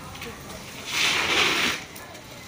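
Bicycle tyre skidding on a concrete lane: a hissing scrape lasting just under a second, midway through.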